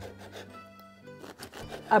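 A serrated bread knife sawing through a crusty French bread loaf onto a wooden cutting board, heard as a run of short crackles from the crust.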